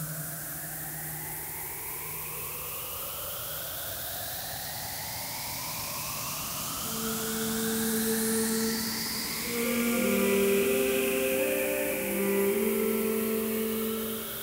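Electronic ambient music from a modular synthesizer: several slowly rising pitch sweeps over a steady hiss. From about halfway, low held organ-like notes come in and step from pitch to pitch as the music swells.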